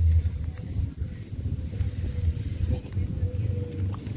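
Wind buffeting an outdoor phone microphone: a low, uneven rumble, with a faint steady tone beneath it.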